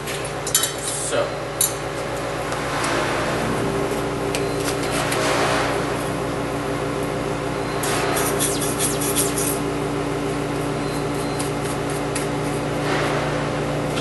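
A steady low mechanical hum, with light clicks and taps of lab glassware and a rubber pipette bulb being handled about a second in and again around eight seconds in.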